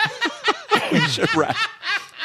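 Several people laughing together in short, overlapping bursts.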